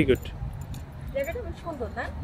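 A person's voice finishing a word at the start, then quieter talk about a second in, over a low steady background rumble.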